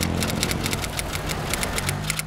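Rapid typing clicks, a keyboard-style sound effect at about ten clicks a second, over a steady low rumble of city traffic.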